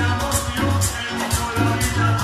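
Live Latin dance band playing through a PA system: a pulsing bass line under congas and a steady, even percussion beat.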